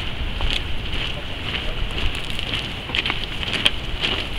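Wind buffeting the microphone in a steady rush, with irregular crackling and flapping from the cloth of ceremonial standards blowing in the wind.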